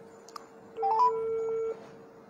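Electronic tones from a mobile phone: a faint tick, then a quick run of three short beeps stepping upward, followed by a held tone that stops sharply.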